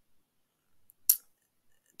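Near silence in a pause between spoken phrases, broken once about a second in by a single short, sharp hiss.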